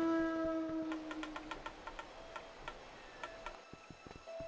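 A quiet stretch of an animated film's soundtrack. A held musical note dies away, then comes a run of light ticking clicks, a few a second, with a few soft low thumps near the end.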